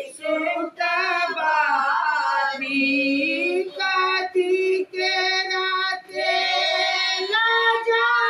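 Women singing a traditional Maithili kobar wedding song in drawn-out sung phrases, with short breaths between them.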